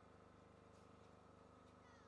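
Near silence: a faint steady background hum, with a few faint short high chirps, one falling in pitch near the end.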